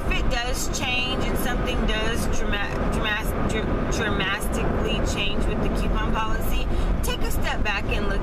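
A woman talking over the steady low rumble of road and engine noise inside a moving car.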